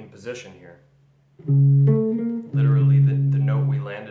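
Clean electric archtop guitar through an amp: about one and a half seconds in, three picked notes follow one another, each left ringing, the last held for over a second. They are notes of a major-triad exercise with leading tones, played up the fretboard.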